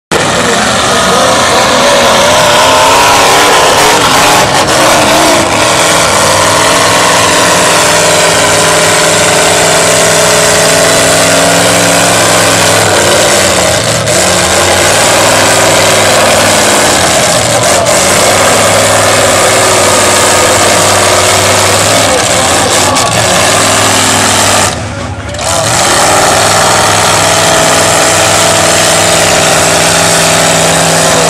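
A lifted mud truck's engine running hard at high, steady revs through a mud trench, its pitch wavering in the first few seconds and then holding. The sound dips sharply for about half a second near the end before the engine comes back at full revs.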